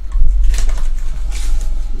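Trading cards being handled and slid against each other close to the microphone, with two brief swishes about half a second and a second and a half in, over a heavy low rumble.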